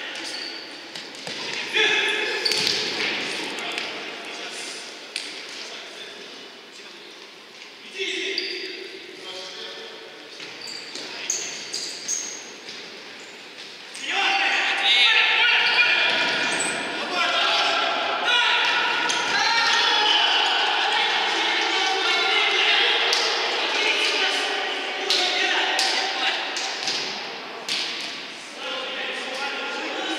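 Futsal ball being kicked and bouncing on the hall floor in sharp, repeated thuds, amid players' shouts and calls that grow louder and more continuous about halfway through. The sound rings in a large echoing sports hall.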